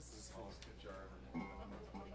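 Low background talk in a bar room with faint music, over a steady hum.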